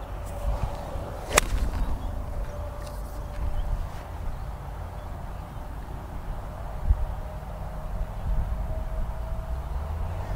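Golf iron striking a ball: one sharp, crisp click about a second and a half in. Wind rumbles on the microphone throughout, with a stronger low buffet near seven seconds.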